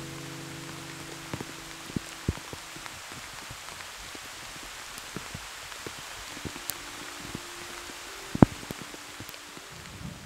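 Rain falling steadily, with scattered drops ticking irregularly on nearby surfaces; one sharp, louder drop hit stands out near the end.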